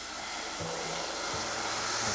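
Hot melted caramel of white and brown sugar hissing and sizzling in the pot as warm water is poured into it. The hiss grows steadily louder.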